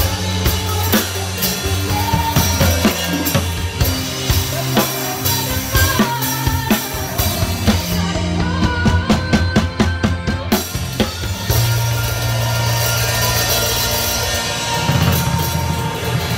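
Drum kit played along to a recorded backing track with sustained bass and melody notes: kick, snare and cymbals keep a steady beat. About eight seconds in the cymbals drop out for a couple of seconds of evenly spaced drum strokes. After that the playing thins out into ringing cymbals over the backing.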